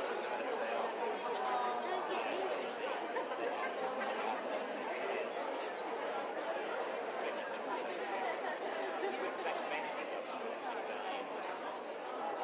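Lecture audience talking in pairs all at once: a steady hubbub of many overlapping conversations, no single voice standing out.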